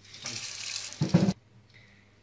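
Water running from a kitchen tap into a stainless steel sink as apples are rinsed under it. The flow grows briefly louder, then stops abruptly about a second and a half in.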